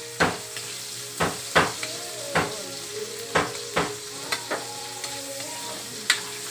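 Metal spatula scraping against a steel wok in about eight uneven strokes while chopped tomatoes sizzle in hot oil: a stir-fry sauté.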